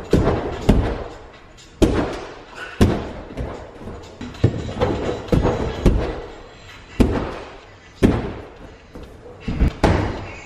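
A series of heavy thuds, about one a second, each with a short echo in a large hall: a person's jumps and landings on an inflatable air track and against a plywood wall.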